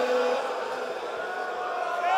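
A male noha reciter's held sung note in a Persian Muharram lament fades out with the hall's echo in the first half-second, leaving a low wash of voices from the gathered mourners until his voice returns near the end.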